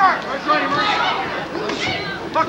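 Voices talking, with crowd chatter from the arena underneath.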